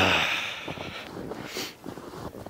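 A man's long, heavy sigh: a voiced groan falling in pitch that turns into a breathy exhale and fades out about a second in. Faint rustling follows.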